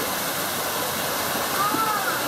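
Steady rush of falling water, with a few faint calls near the end.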